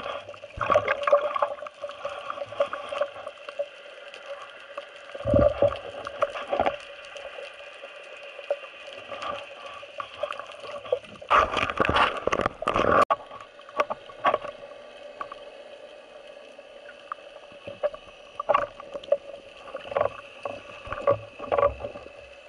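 Underwater noise picked up by a speargun-mounted camera: irregular swishes and knocks of water and handling against the housing as the gun is moved, densest about halfway through, over a steady hum.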